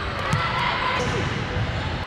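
Basketballs bouncing on a hardwood gym floor, with players' voices and shouts mixed in, all echoing in a large gym.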